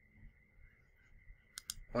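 Computer mouse button clicking, a few quick clicks near the end.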